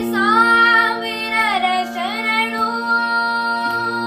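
A boy singing a Kannada melody with sliding, ornamented pitch over a steady drone accompaniment. He dips low around the middle and then holds one long note nearly to the end.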